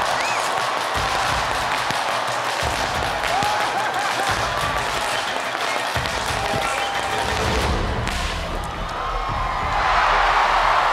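Studio audience applauding and cheering over background music, with a sharp crack of a bullwhip just after six seconds in.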